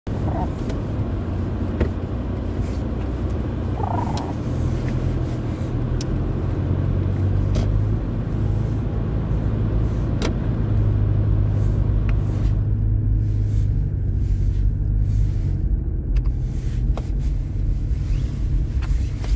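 Road noise heard inside a moving car's cabin: a steady low drone of engine and tyres, with a few faint clicks scattered through it.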